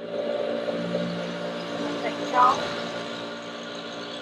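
Steady hum of factory machinery with several steady pitches, beginning with the shot.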